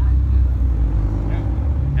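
Ferrari Daytona convertible's engine idling: a low, steady rumble.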